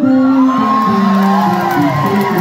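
Live rock band playing held notes that step from chord to chord, with the crowd whooping and cheering over it.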